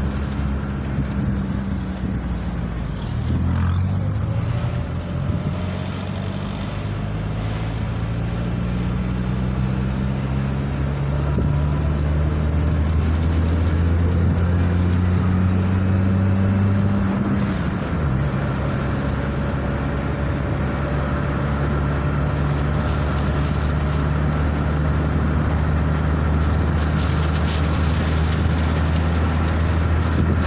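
A car's engine and road noise heard from inside the moving car: a steady low engine drone whose note shifts in pitch about three seconds in and again about eighteen seconds in.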